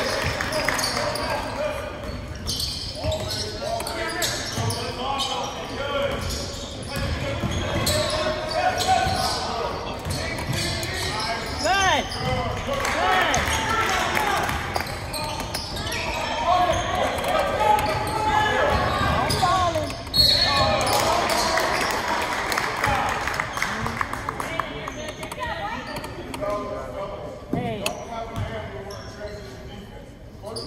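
Basketball game in a gym: a ball bouncing on the hardwood court, sneakers squeaking, and players and spectators shouting and talking, echoing around the hall.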